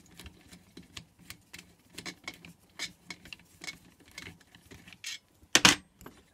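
Light metallic clicks and ticks, a few a second at uneven spacing, as a screwdriver turns a bolt out of a diesel heater's burner assembly. A louder clatter near the end as the screwdriver is put down on the bench.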